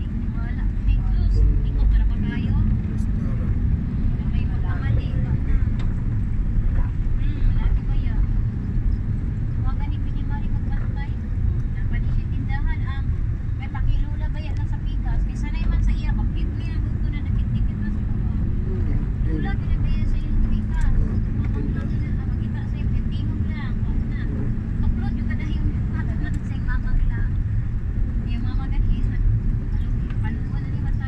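Steady low road and engine rumble of a moving vehicle, heard from inside it, with faint indistinct voices over it.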